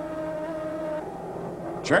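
Offshore racing powerboat engines running at speed: a steady pitched drone that fades about a second in.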